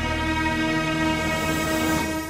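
Dramatic TV-serial background score: a loud held chord of many sustained tones, with a hissing swell building near the end before it falls away.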